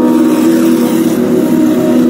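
Background music: a sustained chord held steady, played through portable horn loudspeakers.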